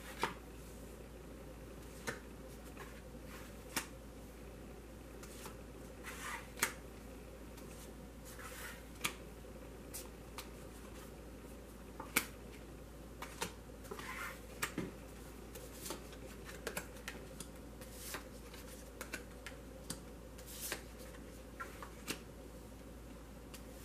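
Tarot cards being dealt from the deck and laid down one by one on a cloth-covered table: scattered light taps and clicks, some with a brief sliding swish, over a faint steady hum.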